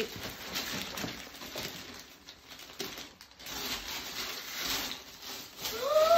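Gift wrapping paper rustling and crinkling as a present is handled and unwrapped, with a brief lull about halfway through and louder crinkling after it.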